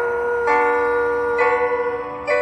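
Piano chords struck about once a second and left ringing, over one long held note.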